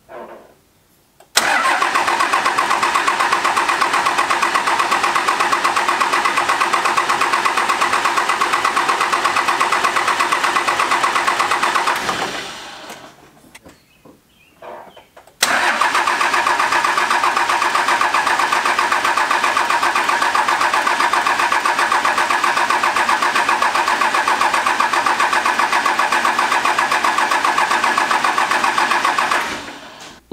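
12-valve Cummins diesel cranking on its starter without firing, in two long, steady runs of about ten and fourteen seconds with a short pause between. It turns over evenly but never catches: no diesel is reaching the injector lines.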